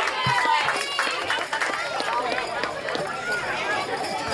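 A crowd of many voices chattering over one another, with high children's voices among them and a few sharp clicks.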